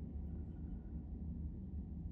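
Faint steady low hum of room tone, with no distinct sound events.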